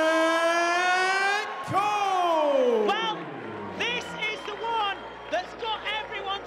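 Ring announcer over the arena PA drawing out the fighter's name as one long held call that rises slightly, then a second long call that swoops down in pitch and dies away about halfway through. Music then starts, with short quieter calls over it.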